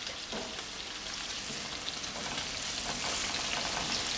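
Thick burger patties frying, a steady sizzle with faint crackles that grows slightly louder in the second half.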